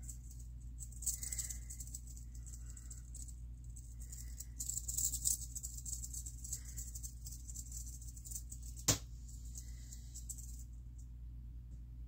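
Rattlesnake held in the hand shaking its tail rattle: a dry, high buzz that comes and goes in bursts, loudest about halfway through and fading out near the end. A single sharp click is heard about three-quarters of the way through.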